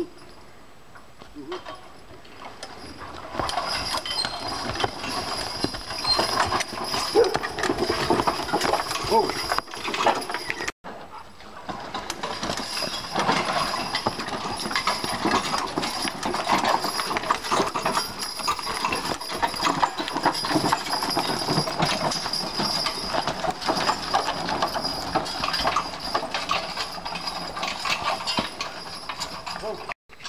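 A team of draft horses hauling a log on a wheeled logging arch uphill. Hooves thud and shuffle through the leaf litter while harness chains and hardware rattle continuously, growing louder a few seconds in.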